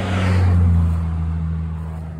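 A road vehicle passing by: a low engine drone with tyre noise that swells about half a second in, dips slightly in pitch as it goes past, and fades.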